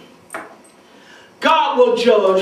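Speech only: a man preaching into a microphone, resuming after a short pause about one and a half seconds in. A short sharp sound comes about a third of a second in.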